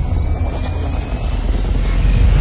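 Cinematic intro sound effect: a loud, deep, steady rumble with a hissing noise over it and a faint rising whine.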